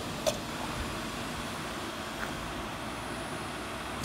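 Steady hum and hiss from the running ozone-generator equipment, with one brief click about a quarter second in.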